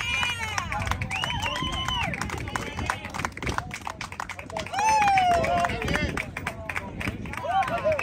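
A group of young players shouting and cheering together, with a loud falling yell about five seconds in, over scattered sharp claps and hand slaps.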